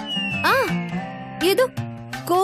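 Comic background score over a reaction shot: a long falling whistle-like tone with a short rising-and-falling glide about half a second in, then plucked musical notes.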